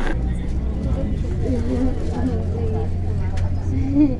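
Airport apron bus's engine running with a low, steady drone as the bus drives across the tarmac, heard from inside the cabin, with faint voices of passengers over it.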